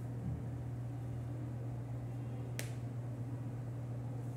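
A steady low hum with a single sharp click about two and a half seconds in.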